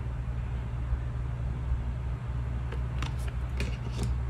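A steady low hum, with a few faint taps and rustles of cardstock die cuts being set down and handled on a tabletop about three seconds in.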